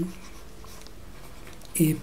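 Faint scratching and tapping of a stylus on a writing tablet as handwriting is written, between spoken words: one word ends at the very start and a voice says "a" near the end.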